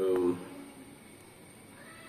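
A short voiced sound, about a third of a second long, right at the start, followed by quiet room tone.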